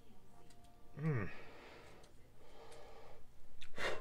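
Small scissors snipping the cotton wick tails on a rebuildable atomizer deck, making faint clicks and a sharper snip just before the end. The scissors are not cutting well. A man gives a short falling sigh about a second in.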